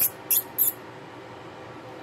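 Three quick, high, hissing mouth calls like "psst" from a person close to the microphone, all within the first second, calling a pet rodent.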